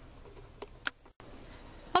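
Quiet room tone with two short, light clicks in the first half, then a momentary dropout to silence at an edit cut.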